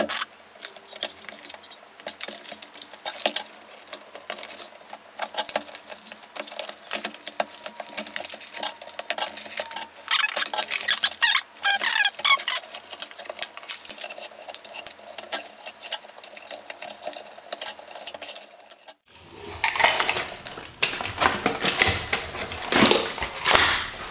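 A cardboard toy box being cut open with scissors and its cardboard insert and plastic toy handled: a steady run of small clicks, snips, rustles and rattles. Near the end the sound drops out briefly, then the handling comes back louder.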